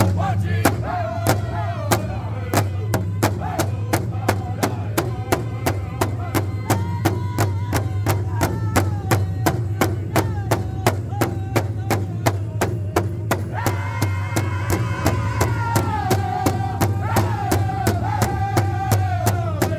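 A powwow drum group singing in unison while striking one large hide-covered powwow drum in a steady, even beat. Near the end the voices come in louder and higher.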